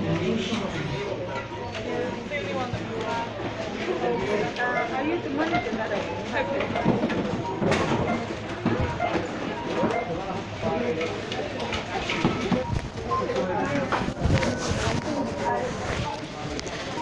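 Indistinct voices talking throughout, with a few sharp knocks or clatters, the clearest about eight seconds in and another near fourteen seconds.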